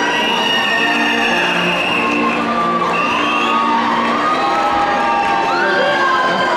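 A large crowd cheering and shouting, with high yells rising above the din, over music with held notes.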